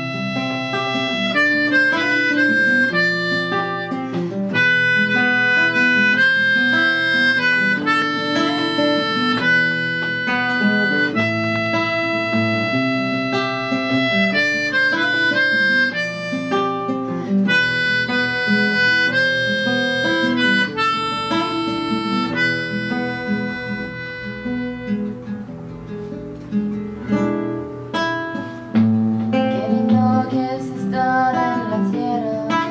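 Instrumental introduction of a song cover: a harmonica plays a melody of held notes over a strummed acoustic guitar. The harmonica drops out near the end, leaving the guitar alone.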